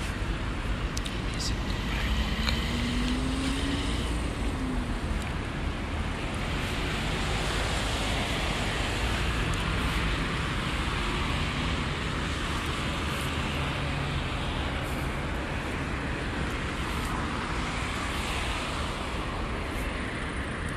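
Steady road traffic noise from cars running along a multi-lane street, a continuous low rumble and hiss of engines and tyres.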